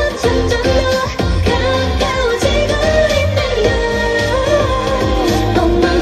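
K-pop dance-pop song through a concert sound system, with female group vocals over a steady bass-heavy beat.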